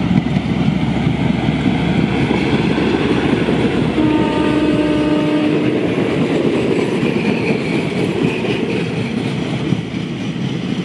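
Diesel railcar train passing close by: its engine running and wheels rumbling on the rails. A single-note horn sounds for about two seconds, starting about four seconds in.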